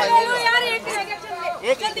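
People talking loudly in a crowd, their voices running almost without pause.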